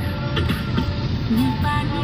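Road and engine noise inside a moving car, with a vehicle horn sounding briefly near the end.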